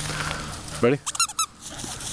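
A quick run of five or six short, high-pitched squeaks, lasting about a third of a second, shortly after one second in.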